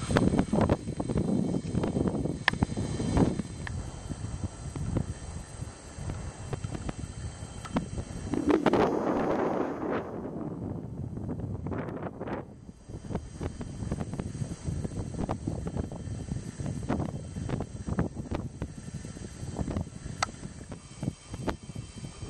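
Wind buffeting a handheld camera's microphone, an uneven rumble with scattered knocks from handling, strongest about a third of the way in.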